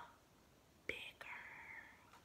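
A woman whispers a single word, "bigger", after a near-silent pause of about a second. The whisper is faint and breathy, with no voiced pitch.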